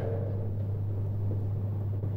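Steady low electrical hum, one unchanging low tone, over faint room noise.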